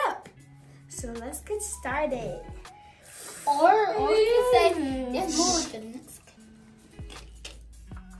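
Children's voices over background music with a low steady bass line; the voices come in two stretches, one about a second in and a longer one from about three and a half to six seconds.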